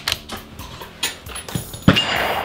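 A few metallic clicks as the bolt of a Desert Tech SRS Covert bullpup rifle is worked, then, near the end, a single .338 Lapua Magnum rifle shot, the loudest sound, ringing on after it.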